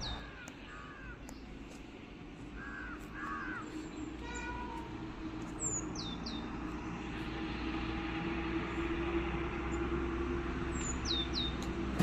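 Birds calling: sharp downward-sweeping whistles in quick pairs come three times, with a few short chirps and a brief harsher call between them. A faint steady hum lies underneath.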